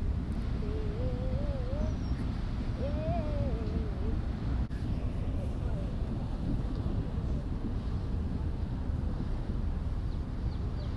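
Steady low rumble of the cargo ship McKeil Spirit passing close by under way. Early on, two short wavering sounds from a person's voice, like a hum, sit over it, and there is a single click about halfway through.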